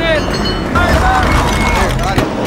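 Pit crew shouting urgently over the low rumble of a Ford GT40 race car's engine as the car pulls into the pit lane.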